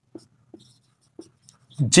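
Marker pen writing on a whiteboard: a few short, faint strokes of the felt tip squeaking and scratching across the board.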